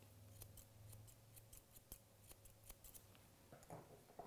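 Grooming shears snipping through a Wheaten Terrier's beard and face hair: a quick run of faint snips, about five a second, that stops about three seconds in. A brief soft, low sound follows near the end.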